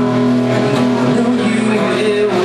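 Solo acoustic guitar playing live, with notes held and ringing steadily rather than sharply strummed.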